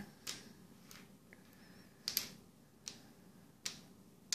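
Small wooden fence pieces set down one after another on a cardboard game board, giving a few light, sharp clicks; the one about two seconds in is the loudest.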